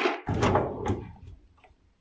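A box of drywall screws dropped into a fabric tool bag, followed by a short shuffle and rattle of handling noise with a few small clicks that dies away after about a second.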